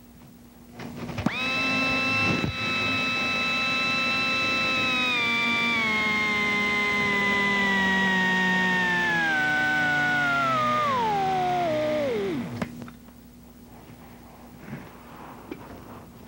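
Low-speed electric dental handpiece motor run from the foot control. It whines up to speed about a second in and holds steady, then slows in steps and winds down to a stop about three seconds before the end.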